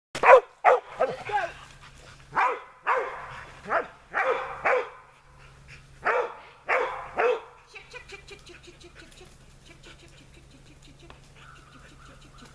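A dog barking excitedly in quick bursts of short, loud barks, about fifteen in all, which stop about seven seconds in.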